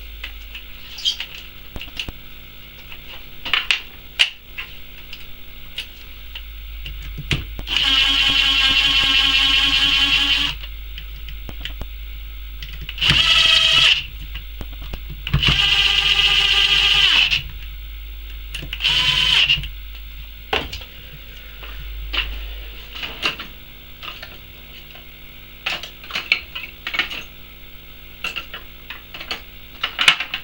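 Cordless DeWalt drill driver running in four short bursts of steady motor whine, driving in the screws that hold a new regulator onto a Lucas A127 alternator. The first and third bursts are the longest. Small clicks and knocks from handling the screws and parts come between the bursts.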